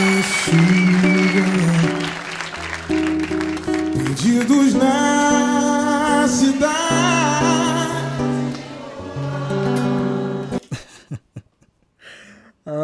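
A male singer sings a slow Brazilian pop ballad over strummed acoustic guitar chords, from a live performance. The music stops abruptly near the end, leaving a few clicks.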